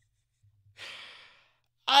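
A man's sigh: one breathy exhale of about half a second that fades out.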